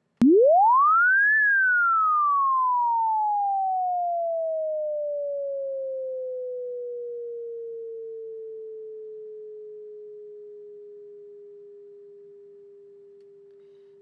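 Logic Pro ES2 software synth sounding one held note, a pure tone whose pitch is driven by an envelope. After a click at note-on it glides quickly up for about a second, then slides slowly back down through the decay and settles on a steady lower pitch at the sustain level. The volume fades gradually the whole time.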